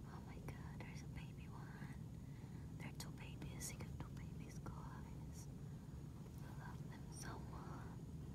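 A person whispering softly in short phrases, over a steady low hum.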